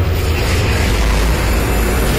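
Cinematic sound-design whoosh: a loud, sustained rushing noise with a deep rumble underneath.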